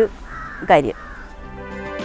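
A crow caws once, loudly, a little under a second in, then background music comes in and plays on.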